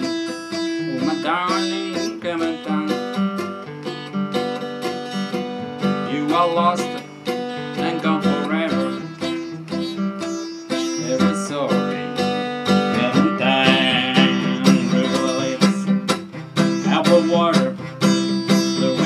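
Large-bodied Epiphone acoustic guitar being played, chords strummed and notes left ringing, one chord change after another.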